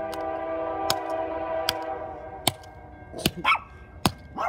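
A small sledgehammer striking a smartphone on gravelly dirt: four sharp hits less than a second apart. Under the first three seconds there is a steady ringing, several notes held together, that stops abruptly.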